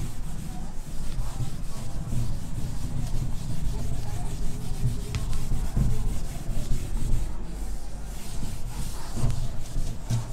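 Whiteboard eraser rubbed back and forth across a whiteboard, wiping off marker writing in repeated uneven strokes.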